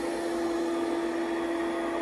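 Digital Essentials robotic vacuum cleaner running on low-pile carpet: a steady motor hum with one held tone over a hiss of suction.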